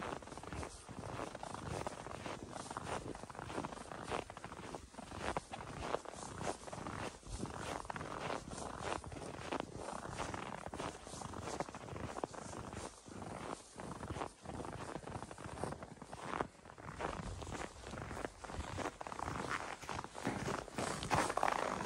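Footsteps in snow, one after another at a walking pace.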